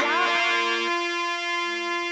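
Harmonium sustaining a held chord between sung lines. A couple of its lower notes drop out about halfway through, and one comes back near the end.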